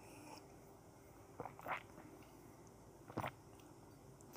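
Faint sips and swallows of coffee from a mug: a couple of soft mouth sounds about a second and a half in, and one more a little after three seconds.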